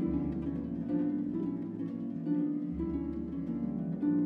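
Concert pedal harp playing a run of plucked notes, with a string ensemble holding low bass notes beneath it; the bass note changes a little under three seconds in.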